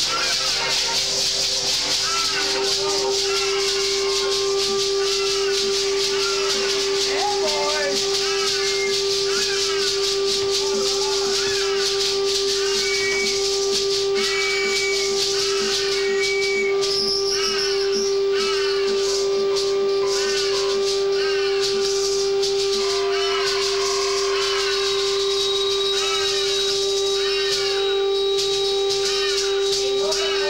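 Live band music: one steady droning note held throughout, under many short swooping, warbling tones and a constant high rattling hiss like a shaker.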